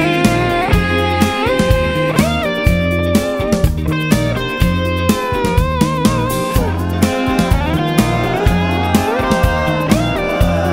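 Instrumental break of a rock song: a guitar solo with bent and sliding notes and vibrato, over bass and a steady drum beat.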